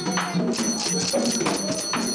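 Haitian Vodou ceremonial music: hand percussion with sharp rattle strokes several times a second, under voices singing.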